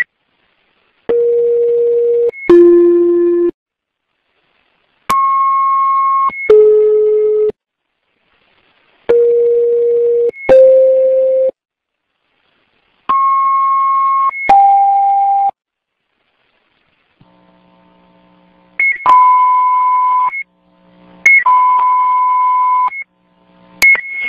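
Fire dispatch alerting tones over a radio channel: four two-tone pairs about four seconds apart, each a steady tone of just over a second followed by a second tone at a different pitch. In the last third, further tone sequences follow at other pitches, ahead of the radio dispatch announcement.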